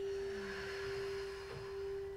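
Singing bowl rubbed around its rim with a wand, holding one steady, pure tone. A soft rush of breath, people exhaling through the mouth, passes over it and fades out near the end.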